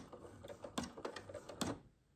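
Domestic sewing machine stitching slowly through thick fleece at the start of a seam, back-tacking: a low motor hum with three sharp clicks a little under a second apart, stopping shortly before the end.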